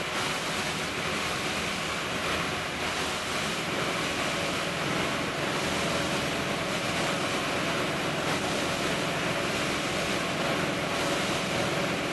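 Chocolate production line machinery running with a steady, even rushing noise.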